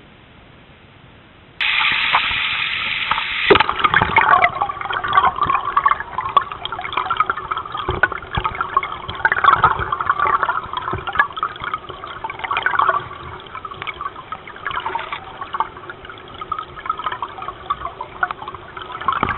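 Stream water rushing and gurgling over a rocky, pebbly bed, heard with the microphone under the surface, full of crackling bubble clicks. It starts suddenly about a couple of seconds in.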